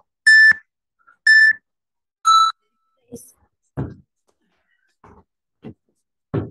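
Workout interval timer beeping a countdown: two short high beeps a second apart, then a lower-pitched beep about two seconds in that starts the work round. After it come a few faint thuds from people starting burpees.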